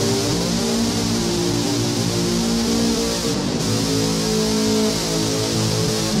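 LP-style electric guitar played through a Behringer UM300 distortion pedal: a run of held, overlapping distorted notes, changing pitch every half second or so, with a steady fizz on top.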